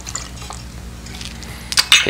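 Bourbon poured from a steel jigger over ice into a rocks glass, a faint trickle, with a couple of sharp clinks near the end.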